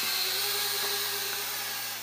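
Small TKKJ TK112W folding toy quadcopter's motors and propellers hovering, a thin steady hum over a steady hiss, both easing a little quieter near the end.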